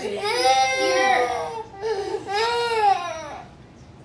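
A young girl crying: two long wailing cries, each rising and then falling in pitch, dying away near the end.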